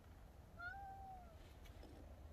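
A domestic cat meows once, a single short call about half a second in that rises slightly, holds and then falls away.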